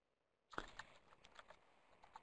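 Near silence, with a few faint short clicks about half a second in.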